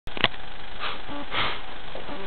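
A sharp click, then two short sniffs, over a steady hiss.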